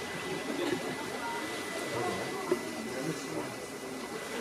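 Faint, indistinct chatter of an audience in the stands, with no single sound standing out.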